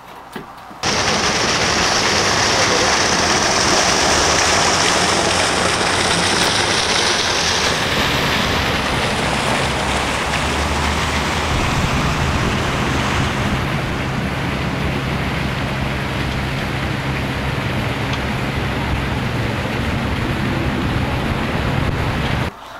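A loud, steady rushing noise, with no voice or tune in it, that starts abruptly about a second in. A low steady hum joins it about halfway.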